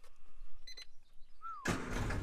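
Classic Mini's engine catching about one and a half seconds in, with no long cranking, then idling steadily and smoothly.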